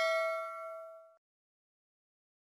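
Ringing tail of a notification-bell 'ding' sound effect from a subscribe-button animation: several clear bell tones fade out and stop abruptly about a second in.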